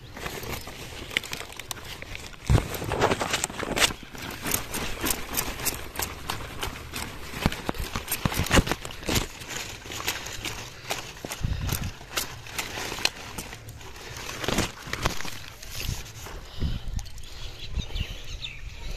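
A cauliflower plant being harvested by hand: a long run of irregular snaps, cracks and rustles from its stalk and leaves, with a few heavier thumps.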